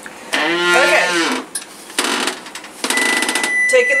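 Electric oven door opened and a metal baking sheet pulled out over the oven rack, with a short run of rapid metallic clicking and rattling. A steady high-pitched electronic tone starts about three seconds in and keeps sounding.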